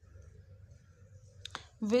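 Quiet low room hum, broken by a single sharp click about one and a half seconds in, just before a voice starts speaking near the end.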